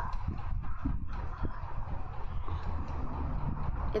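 Low rumble with irregular soft taps and knocks.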